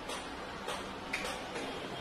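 A few sharp, separate clicks and taps of a carpenter handling a drill and working at a wood wardrobe panel, about half a second apart, over a steady low background noise. The drill is not running.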